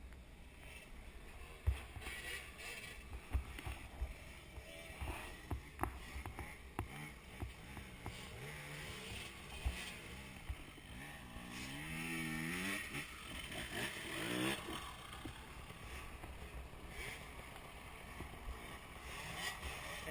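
Distant dirt bike engine revving unevenly as it climbs a steep slope, its pitch wavering up and down, clearest a little past the middle. Wind buffets the helmet microphone, with a few low knocks.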